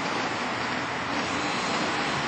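Skateboard wheels rolling over rough asphalt, a steady rumbling noise.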